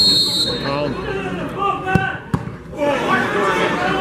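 Referee's whistle blast, about half a second, at the start; then, about two seconds in, a free kick struck: a thud of boot on ball and a second thud close after. Spectators talking throughout.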